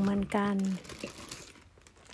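A plastic zip-top bag crinkling and rustling as handfuls of thin sliced galangal are packed into it.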